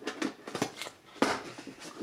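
A metal collector's tin being handled: a run of light knocks and clicks, the sharpest a little past halfway.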